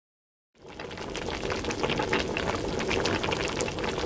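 Azuki beans boiling in a pot of water: a steady bubbling with many small pops, fading in about half a second in.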